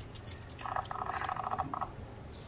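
A small camera-lens autofocus motor whirring in a buzzing spell of rapid pulses from about half a second in, as the close-up shot refocuses. Light clicks of the steel watch being handled in the fingers come near the start.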